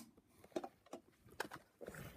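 Faint, scattered clicks and knocks of small plastic toy wheelie bins being handled, with one sharper click about one and a half seconds in.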